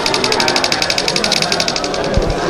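Xiaomi Mi Note 3 camera's burst-mode shutter sound: a rapid, even run of clicks, about fifteen a second, as the shutter button is held down for a burst, stopping near the end.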